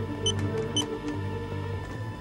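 Two short, high electronic beeps about half a second apart from a defibrillator being charged to 200 joules, over steady background music.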